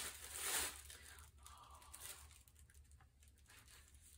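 Tissue paper rustling and crinkling as a wrapped gift is unfolded, loudest in the first second, then dying down to faint rustles.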